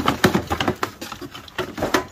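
Objects being rummaged through and pulled out of a plastic storage drawer by gloved hands: a quick, irregular run of knocks, clatters and rustles.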